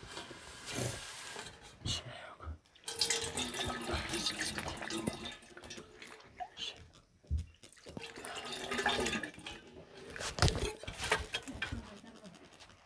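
Water poured from a metal ewer over hands into a metal basin, splashing in three separate pours, with a few sharp metal clinks in between.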